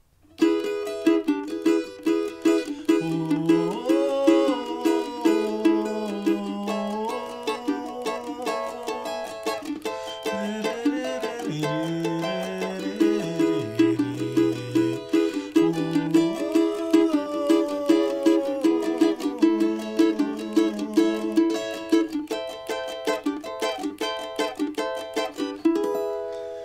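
Cavaquinho strummed in a steady samba-pagode rhythm, playing the chord progression of the song's first part, starting on E major. A lower bass line moves underneath the chords.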